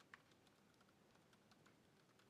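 Faint typing on a laptop keyboard: a scatter of soft key clicks.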